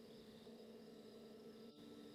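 Near silence between narration lines, with only a faint steady hum.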